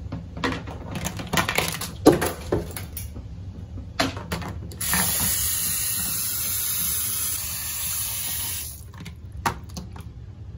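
Bathroom sink tap running for about four seconds, water splashing over a toothbrush into the basin, then shut off. Before and after it, sharp clicks and knocks of things being handled in and around the sink.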